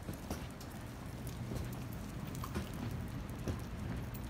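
Irregular footsteps and small clicks on a concrete sidewalk over a steady low rumble.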